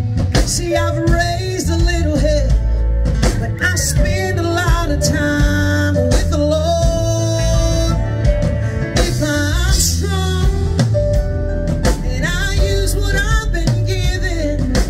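Live country band music: an electric guitar and drum kit with women singing into stage microphones.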